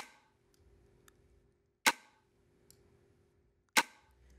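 Layered snap-and-snare drum sample played back through a hard-ratio compressor: three hits about two seconds apart, each with a short reverb tail.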